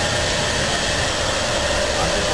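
Hair dryer running steadily during a blow-dry: a constant rush of air with a faint steady motor whine.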